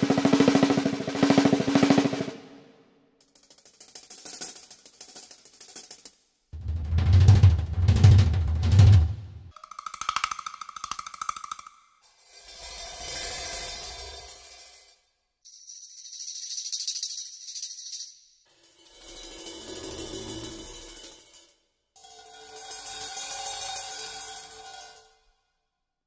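Sampled acoustic drum kit from the 8Dio Aura Studio Percussion library, played one piece at a time in phrases of fast repeated strokes. Each phrase lasts two to three seconds, with short gaps between them. One phrase is a deep, loud bass drum and another is a high, hissy cymbal.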